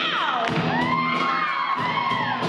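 Live rock band playing with a steady drum beat, while high voices whoop over it: one glides steeply down at the start, then several rise and fall together.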